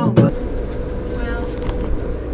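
Acoustic guitar music cuts off abruptly a moment in. After it comes the steady low rumble of a ferry's engines with a faint steady hum, heard from inside the passenger lounge.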